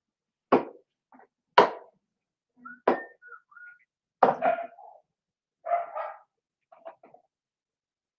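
A dog barking: four sharp barks about a second apart, then a few softer ones.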